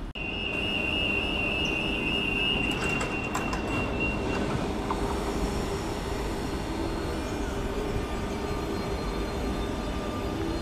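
Renfe Cercanías electric train's wheels squealing at a high pitch on the station's very tight curve for about four seconds, then a steady low rumble and hum from the train.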